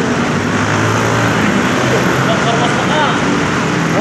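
Busy intersection traffic: cars and motorcycles driving through, with a steady wash of engine and road noise and a low engine hum in the first half.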